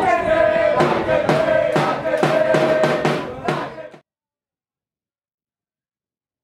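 Music with a steady drum beat under a long held note, which cuts off abruptly to silence about four seconds in.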